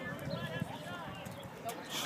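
Several people talking at once in the background, their voices indistinct and overlapping, with a few light clicks.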